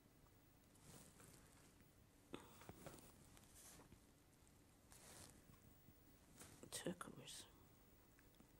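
Near silence: room tone with a few soft, brief rustles and small clicks, and a faint whispered voice about seven seconds in.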